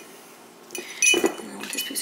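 A ceramic vase being handled on a table: a quick run of small clinks and taps with short ringing tones, loudest just after a second in.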